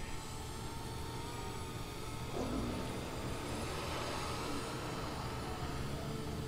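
Faint, steady outdoor background noise: a low hum and hiss with no distinct sounds standing out.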